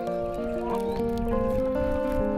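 Background music: a slow melody of held notes that change every half second or so, over a low rumbling noise.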